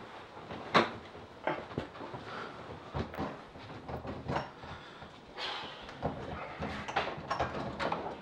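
Irregular knocks, clicks and rustling of someone moving about a dark room and handling a door, the sharpest knock about a second in.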